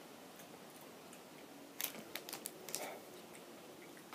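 Faint clicking mouth sounds of a person chewing a jelly bean, in a short cluster about two seconds in.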